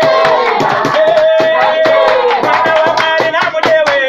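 Voices singing a worship chorus in long held notes, with steady rhythmic hand clapping keeping the beat.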